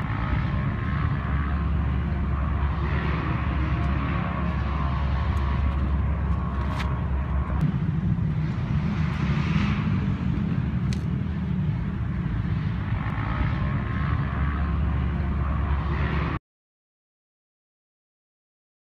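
Polaris 1000 XP side-by-side's twin-cylinder engine and drivetrain running steadily at trail speed, with a couple of light clicks along the way. The sound cuts off suddenly near the end.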